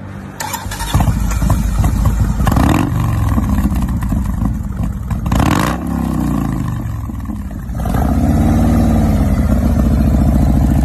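Customised 1998 Harley-Davidson Softail Heritage's Evolution V-twin being started: the starter cranks briefly and the engine catches about a second in. It settles into a lumpy idle with two short throttle blips, then runs louder and steadier from about eight seconds.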